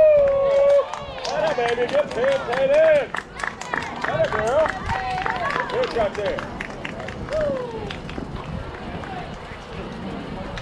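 Spectators and players at a youth fastpitch softball game yelling and cheering in high voices, with clapping, as a batted ball is put in play. The shouts are loudest in the first three seconds and die down after about eight.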